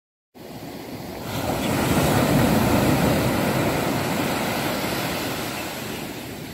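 Ocean surf washing onto the shore: a steady rush that begins a moment in, swells over the first couple of seconds and then slowly fades.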